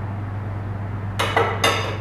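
A utensil clinking against a stainless steel mixing bowl twice, a little past the middle, the strikes ringing briefly, over a steady low hum.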